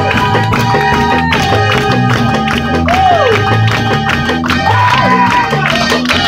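Live church worship band playing loud music, with a rhythmic bass line, drum hits and a lead line whose notes slide up and down in pitch, over some crowd noise.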